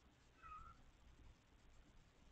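A domestic cat gives one short, faint meow about half a second in.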